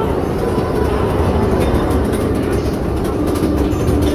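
Mine-car roller coaster train climbing its lift hill, with a steady, dense mechanical rattle from the lift and the cars.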